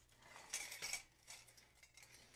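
Hands shifting a corrugated tin sign against a grapevine wreath on a table: a faint scrape and rustle about half a second in, then a few lighter touches.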